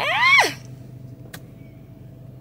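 A woman's drawn-out vocal sound, rising then falling in pitch, for the first half second. After it comes the steady low hum of an idling car heard inside the cabin, with a single sharp click about a second later.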